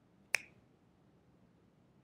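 A single sharp click of computer input about a third of a second in, over faint room tone.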